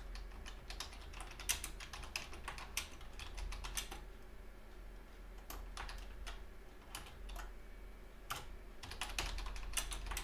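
Typing on a computer keyboard in irregular runs of keystrokes, with a pause of about a second and a half near the middle. A low steady hum runs underneath.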